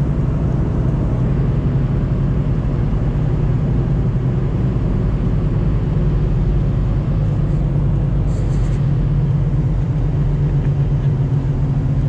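Inside the cabin of a moving Honda car: a steady low drone of engine and tyre noise while driving on a winter road.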